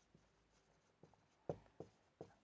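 Marker pen writing on a whiteboard: a few faint, short strokes, most of them near the end.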